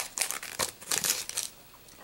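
Foil wrapper of a Pokémon trading card booster pack crinkling as it is handled and torn open, a dense crackle that stops about one and a half seconds in.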